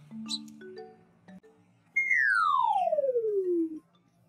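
Background music of short mallet-like notes. About halfway through, a loud comedic falling-whistle sound effect takes over, gliding smoothly down in pitch for nearly two seconds before it cuts off.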